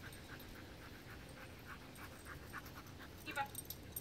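A dog panting quickly and faintly, about five breaths a second.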